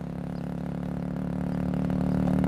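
Motorcycle engine running steadily, growing louder as it comes closer.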